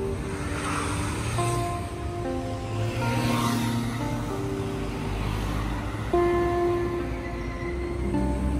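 Background music of slow, held notes changing every second or so, with the noise of street traffic swelling twice beneath it.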